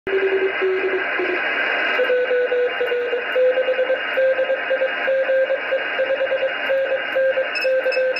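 Morse code (CW) sent as a keyed beeping tone, heard through an amateur radio transceiver's receiver from the RS-44 satellite downlink over steady band hiss. About two seconds in, the tone jumps to a higher pitch and keying carries on.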